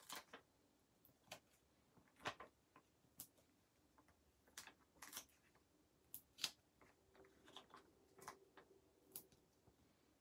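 Faint, irregular small clicks and ticks of hands peeling foam dimensional adhesive squares off their plastic-backed sheet and pressing them onto a die-cut pearlescent paper shell.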